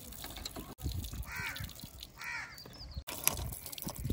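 Water from a hand pump pouring into a plastic basket of eggs and splashing on the ground, with two short squawks about a second apart near the middle.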